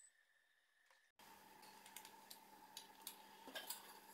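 Near silence, then from about a second in a few faint, scattered clicks and taps as small plastic case parts and a BNC connector are handled and fitted together.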